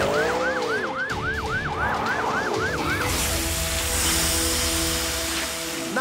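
Cartoon fire truck siren yelping for about three seconds, a little over three rising-and-falling whoops a second. Then comes a steady hiss of water spraying from the truck's hose, with sustained music tones underneath.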